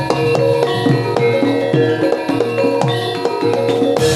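Live Javanese gamelan accompanying a jathilan horse dance: ringing metal gong-chime and metallophone notes over a steady pattern of drum strokes whose low pitch bends downward.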